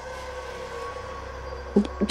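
Steady ambient background music: a low drone with a few held tones, unchanging through a pause in speech.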